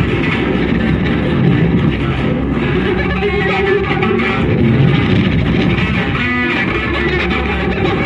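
Electric guitars played live in a free-improvised duo, a dense, continuous mass of amplified string sound. A ringing pitched note stands out briefly about six seconds in.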